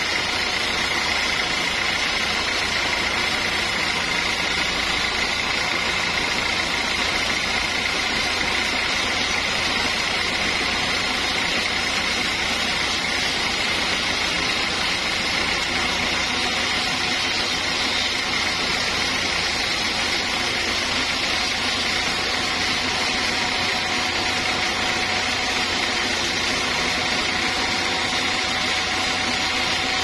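Band sawmill running steadily as a large log is carried through the blade, a constant machine drone with a steady high whine.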